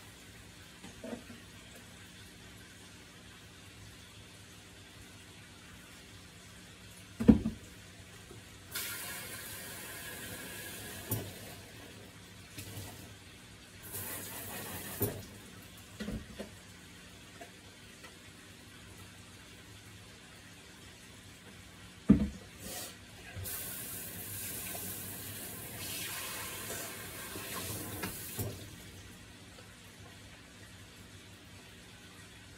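Kitchen tap running into the sink in three stretches, about three to five seconds, one second and five seconds long, as cups are rinsed. Sharp knocks of hard things being set down, the loudest about seven seconds in and again about twenty-two seconds in.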